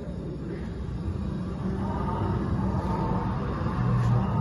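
Steady low background rumble of an indoor dinosaur exhibit, with faint steady tones coming in about halfway through.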